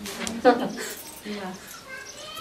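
Voices in a few short, high-pitched exclamations with pauses between them and no clear words.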